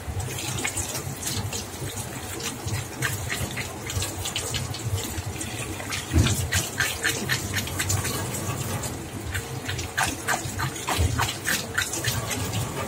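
Tap water running onto a gutted tilapia being rinsed by hand in a stainless steel sink. Irregular wet splashes and slaps come from the hands working the fish under the stream, busier in the second half.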